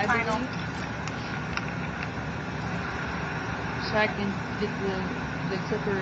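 Electric dog grooming clippers running steadily, with short, high, wavering whimpers from the shih tzu just after the start and again about four seconds in. The groomer takes the dog's discomfort around the face for pain inside his mouth.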